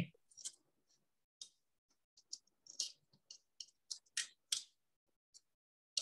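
Faint, irregular small clicks and ticks of a clear plastic frame spacer strip being handled and worked onto the edge of a glass pane, tricky to get started.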